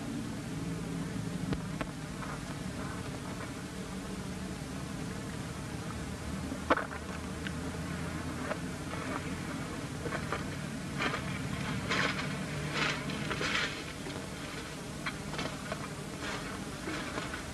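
Steady buzzing hum and hiss of an old film soundtrack, with a sharp click about seven seconds in and a run of short, high crackles near the end.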